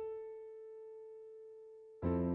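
Background music: a single held electric-piano note, fading slowly and steadily, with no other notes under it.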